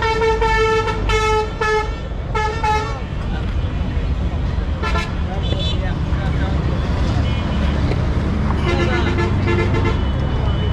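Vehicle horns honking over a steady rumble of road traffic: a rapid run of short blasts in the first three seconds, another short toot about five seconds in, and a lower-pitched horn beeping a few times near the end.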